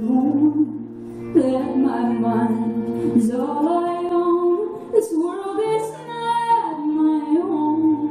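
A woman singing a slow melody with long, drawn-out notes, accompanied live by a band: acoustic guitar with sustained bass and keyboard notes underneath.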